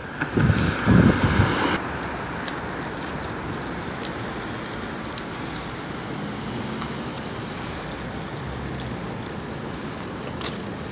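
Steady rushing street noise of wind and traffic, with a Mercedes-Benz city bus driving slowly through a junction, its engine faint beneath. For the first two seconds loud low buffeting of wind on the microphone, which cuts off suddenly.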